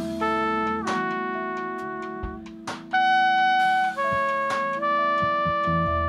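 Live jazz-funk band music: a trumpet plays a line of long held notes, the loudest about three seconds in, over a sustained low chord and steady drum hits.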